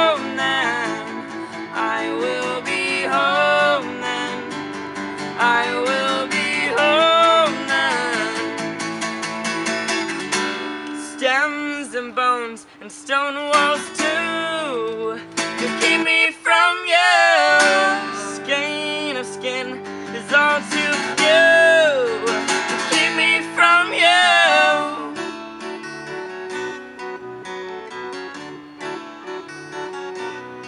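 An acoustic guitar strummed alongside an electronic keyboard, with wavering sung melody lines over them. About 25 seconds in the voices drop out and the guitar and keyboard carry on more quietly.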